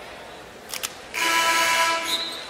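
Arena horn at the scorer's table sounding one steady, buzzing blast of about a second, signalling a substitution during a stoppage in play. Two faint clicks come just before it.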